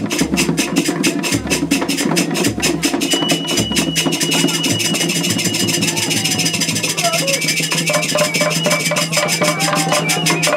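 Traditional Nigerian cultural band drumming: several painted hide-headed drums struck by hand and stick in a fast, steady rhythm. A deep drum pulses under it for the first few seconds, and a steady high tone sounds for a few seconds in the middle.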